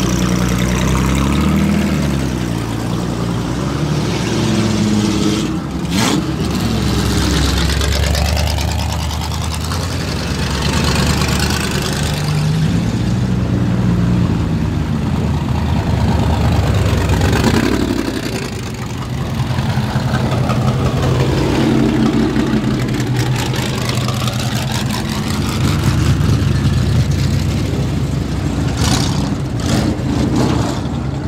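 Vintage speedway stock car engines idling and revving, their pitch rising and falling again and again as throttles are blipped. There is a sharp crack about six seconds in and another near the end.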